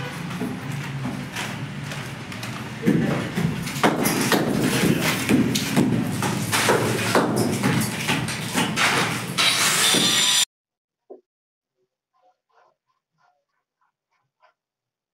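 Hammer blows on a concrete ceiling, a rapid run of sharp knocks over a dense clatter, loud from about three seconds in; the sound cuts off suddenly about ten seconds in, leaving near silence with a few faint small noises.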